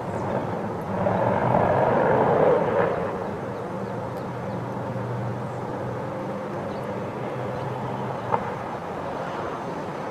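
Distant engine noise, a steady low drone that swells over the first few seconds and then settles, with a single short click near the end.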